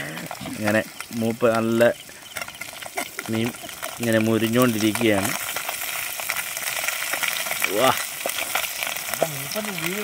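Fish curry sizzling in a metal pot over an open wood fire: a steady hiss with scattered crackles, heard on its own through the second half. A voice sounds over it during the first five seconds and again briefly near the end.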